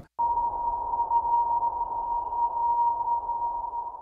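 A steady, fairly high-pitched tone over a narrow hiss, as on a space-to-ground radio channel heard with spacewalk video from the ISS. It begins a moment in and holds one pitch throughout.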